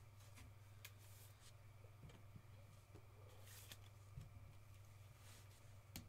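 Near silence: faint rustles and a few soft ticks of trading cards being slid and handled, over a low steady hum.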